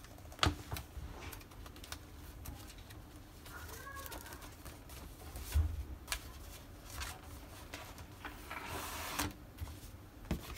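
Handling of a thick paper journal against a leather notebook cover: scattered soft taps and clicks, with a louder stretch of paper and leather rustling near the end.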